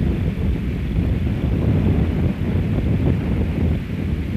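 Wind buffeting the camcorder microphone: a steady, fluttering low rumble with no distinct events.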